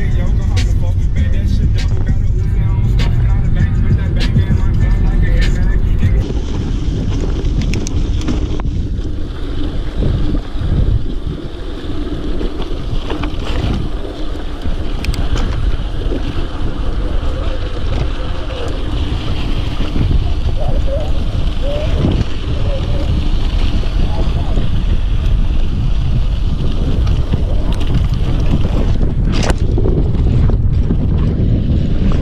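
Mountain bike rolling fast along a dirt fire road, with steady wind noise buffeting the action camera's microphone and rumble from the tyres and bike. Music with a beat plays over the first six seconds or so, then stops.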